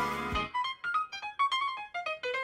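Solo piano music: a loud chord struck at the start, then a quick melody of single notes.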